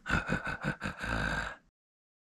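A man's mock evil-villain laugh: about five quick breathy 'ha's and then a longer held 'haaa'. It cuts off abruptly to silence a little before the end.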